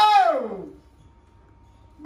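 A man's loud shout at the start, one drawn-out cry that slides down in pitch over less than a second, then quiet.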